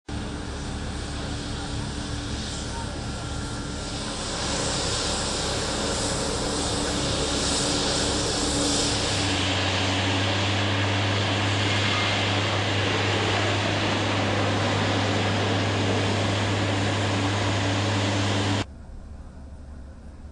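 Embraer E-190 airliner's turbofan engines running with a steady mix of noise and tones. About halfway through, the sound shifts to a strong, steady low hum. Near the end it cuts off abruptly to a much quieter background.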